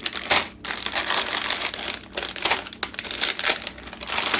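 Clear plastic bags full of small building bricks crinkling and rustling as hands pick them up and move them about, in irregular crackles with the bricks shifting inside.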